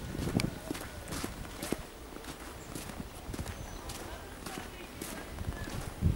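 Footsteps in snow: a person walking with irregular, uneven steps.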